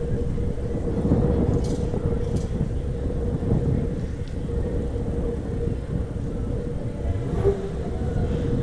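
Steady low rumble of a vehicle rolling slowly along a street, with a constant mid-pitched hum running through it. A few faint high clicks come in the first half.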